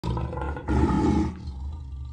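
A lion's roar sound effect, in two pushes of about half a second each, fading away after about a second and a half.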